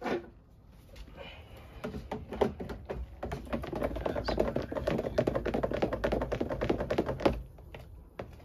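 A long-handled utensil stirring green juice in a large dispenser jar: a quick, busy run of clicks and taps against the jar's sides with the liquid swirling, running from about two seconds in until it stops shortly before the end. A single knock comes at the very start.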